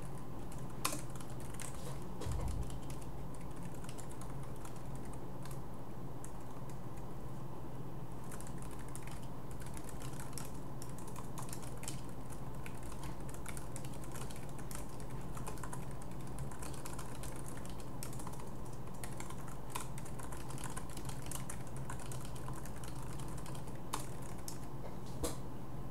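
Typing on a computer keyboard: scattered key clicks at first, then steady typing from about eight seconds in, over a steady low hum. A single low thump about two seconds in.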